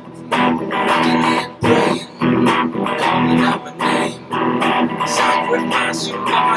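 Electric guitar strumming chords in a steady rhythm, with short breaks between the strokes.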